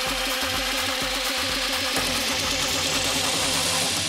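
Electronic dance music from a DJ mix in a build-up: a hissing riser climbs steadily in pitch over a kick drum beating about twice a second, and about halfway through the beat gives way to a quicker, denser low pulse.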